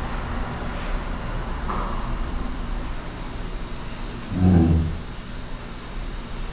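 A steady low rumbling background noise, with one short, low, grunt-like voiced sound about four and a half seconds in.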